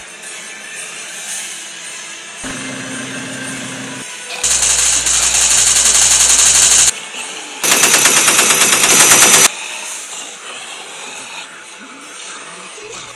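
Two long bursts of rapid automatic gunfire, a sound effect: the first about two and a half seconds long starting near the middle, the second about two seconds long after a short pause. Background music runs quietly underneath.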